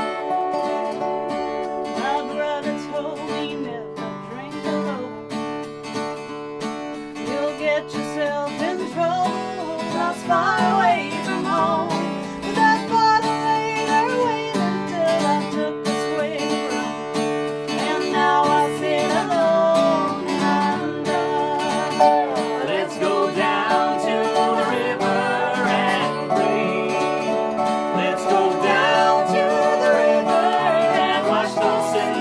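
Americana band playing live: an acoustic guitar strummed, a resonator guitar played lap-style with a slide, and two women singing.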